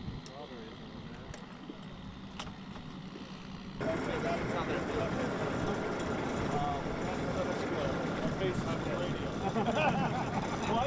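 Outdoor field ambience: scattered distant voices of people talking over a steady background noise, which suddenly gets louder about four seconds in.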